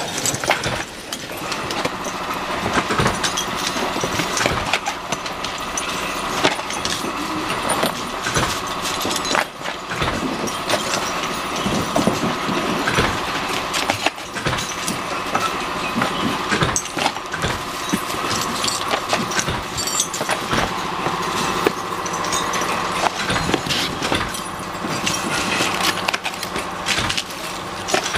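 Metal knob-lock parts being handled and packed by hand: a dense run of small clicks and clinks of brass and steel pieces, with rustling of plastic bags and paper, over a steady background tone that sets in about a second and a half in.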